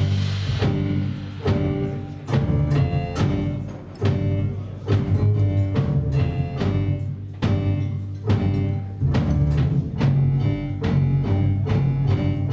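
A jazz combo playing live: keyboard chords over a steady pulse of deep bass notes from double bass and electric bass guitar, with drum kit and cymbal strikes.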